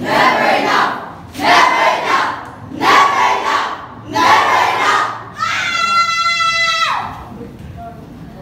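A speech choir of teenage students chanting together in four loud shouted bursts, one about every second and a half, then a long high cry held for about a second and a half that drops in pitch as it ends.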